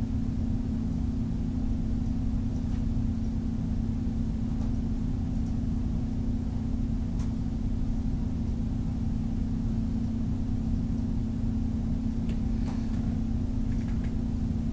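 Steady low background hum with a strong, unchanging low tone and no speech, with a couple of faint clicks.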